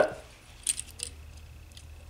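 A few faint small clicks and light rattles, about half a second and a second in, as a lithium battery is pulled out of the clip of a wireless tilt sensor's plastic housing.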